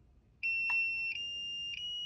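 A SkyRC T100 LiPo charger's beeper sounds one long, high electronic beep of almost two seconds, stepping slightly up in pitch a couple of times, as the Enter/Start button is held down to start a battery check before charging. A short click of the button comes early in the beep.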